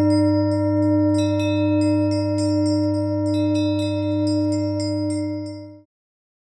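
Closing soundtrack music: a held low drone with a steady ringing tone, scattered with many short, high bell-like tinkles. It all cuts off abruptly just before the end.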